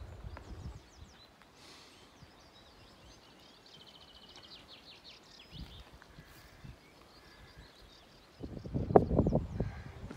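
Faint birdsong, including a quick trill of evenly repeated notes, over a quiet rural background. Near the end, wind hits the microphone in loud low gusts.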